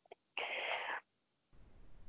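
A person's voice: one short breathy, unpitched sound lasting about half a second, heard faintly over the call.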